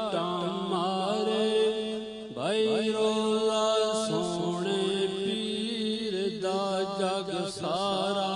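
A man singing a Punjabi devotional song in a long, wavering, ornamented voice, with a pitch slide upward about two and a half seconds in, over a steady low drone.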